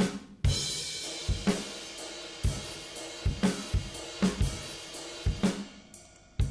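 FXpansion BFD2 sampled drum kit playing a groove: kick and snare hits under a ride cymbal struck on its edge, ringing in a sustained wash that fades near the end. The edge articulation gives the washy sound that sounds terrible in the mix.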